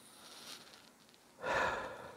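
A person breathing into the microphone: a faint breath in, then a louder, short exhale like a sigh or nose snort about a second and a half in.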